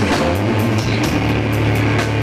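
Live rock band playing loudly: a bass guitar holding a low line under guitar, with drums and cymbals hitting regularly.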